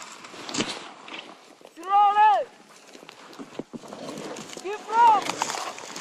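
Two drawn-out shouted calls, one about two seconds in and a shorter, higher one near five seconds: climbers calling to each other to direct the one on the rope. Between them, close rustling and small knocks of hands and rope against the dry mountain scrub.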